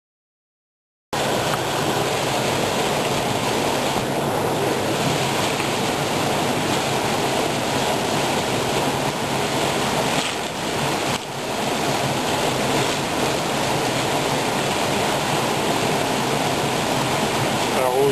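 Small waterfall and stream rushing steadily, cutting in suddenly about a second in, with a brief drop in level about halfway through.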